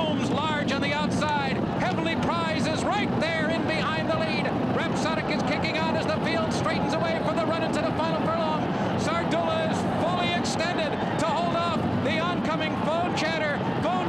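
A man's voice calling the race continuously, over a steady roar of crowd noise from the racecourse grandstand during the stretch drive.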